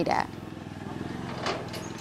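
Motorcycle engine running steadily, swelling slightly about halfway through.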